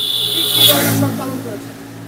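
A motor vehicle passing close by on the street: engine and tyre noise swell to a peak just under a second in, then fade. A steady high-pitched whine stops about two-thirds of a second in.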